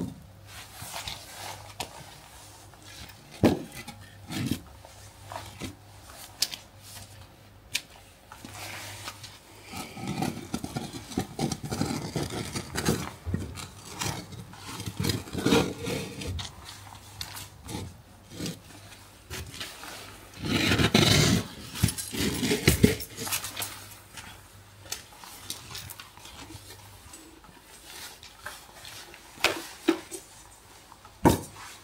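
Heavy terracotta and glazed plant pots being shifted on stone patio slabs: scattered knocks and scrapes, with longer grinding scrapes about ten seconds in and again around twenty-one seconds in.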